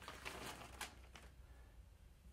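Faint crinkling of a clear plastic bag as a coiled nylon cord is drawn out of it, a few soft crackles in the first second or so.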